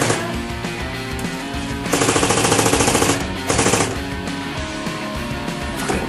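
Airsoft gun firing on full auto: a burst of about a second and a half about two seconds in, then a short second burst just after, over background music.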